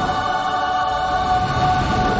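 Choir voices holding one sustained chord, a heavenly-choir music cue in a cartoon soundtrack.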